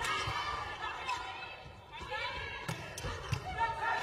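Sharp knocks of a volleyball being struck during a rally, two of them near the end, over the voices and noise of an arena crowd.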